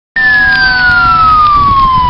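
Fire truck siren sounding one long wail that slides steadily down in pitch, with a low rumble beneath.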